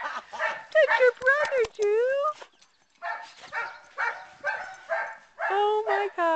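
Dog barking in a run of short barks, about two a second, in the second half, with pitched, rising calls and a short pause before them.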